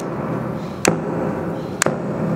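A slow, steady beat of sharp percussive strikes, about one a second, over a steady low drone.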